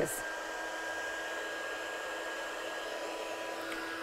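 Craft heat gun for embossing running steadily: a constant rush of blown air with a steady whine, heating to melt clear embossing powder on a die-cut sentiment.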